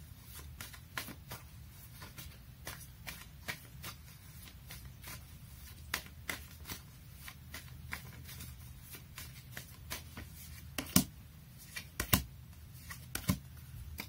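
Tarot cards being shuffled by hand: a quick run of soft card flicks, with a few sharper slaps near the end.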